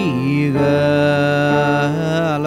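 A man singing a long held note over electronic keyboard chords in a slow worship song; the pitch slides down at the start, then holds steady.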